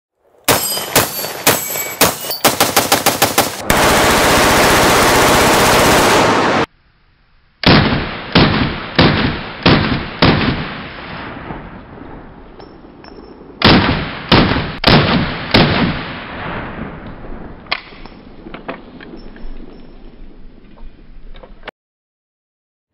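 Gunfire in 4.6x30mm: a quick string of shots, then about three seconds of continuous rapid automatic fire. After a short gap come single shots from a CMMG Banshee AR pistol, roughly two a second, each with a ringing tail, tapering off to fainter shots near the end.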